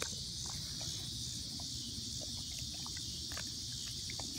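A steady chorus of insects, with faint, scattered short clicks of a German Shepherd chewing a frozen raw chicken foot.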